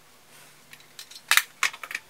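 A quick run of sharp clicks and clatters from small hard makeup containers being handled and set down, starting about a second and a half in.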